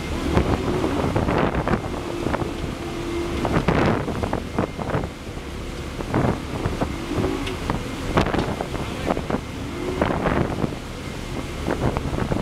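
Wind buffeting the microphone in repeated gusts over the rush of churning wake water and the drone of boat engines running at speed.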